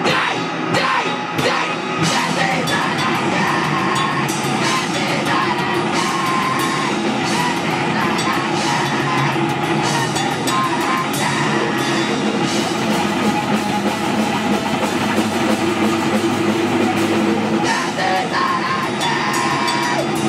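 Live rock band playing loud and without a break: electric guitar, bass guitar and a drum kit, with sung vocals.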